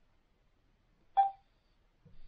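The touchscreen of a Tyent ACE-11 water ionizer gives a single short electronic beep a little past a second in as a button is pressed.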